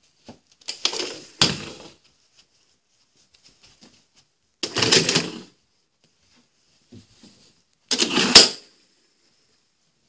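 A small motorised toy car driving over carpet, its motor and gears whirring and rattling in three short spurts of about a second each. A sharp click comes in the last spurt.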